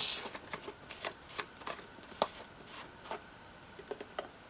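Irregular light clicks and taps of small objects, such as a cap, being handled on a work table, the loudest about two seconds in.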